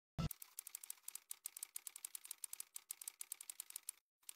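Typewriter-style clicking sound effect: a fast, irregular run of sharp keystroke clicks, about eight a second, opening with a single low thump, as text types onto a screen.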